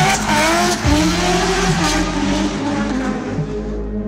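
Drift car engine at high revs, the pitch rising and falling, with the tyres screeching as the car slides. A steady music track plays underneath. The car sound fades out near the end, leaving the music.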